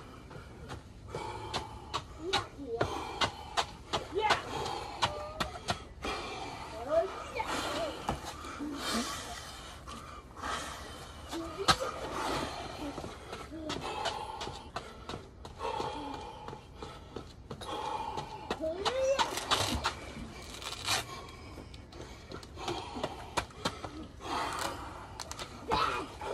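High-pitched voices chattering and calling in the background with no clear words, mixed with scattered short knocks and clatters.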